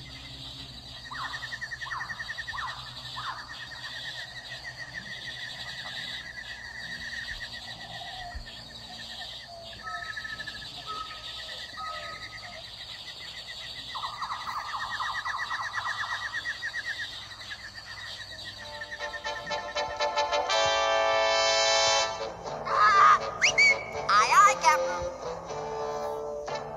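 Played-back soundtrack audio: a rapid, steady trilling chirp like insects or birds through the first half, then music that comes in about two-thirds of the way through and gets louder near the end.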